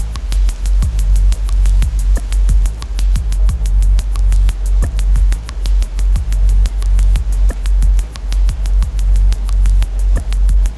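Electronic music: a deep, steady bass drone under a rapid, even ticking pulse.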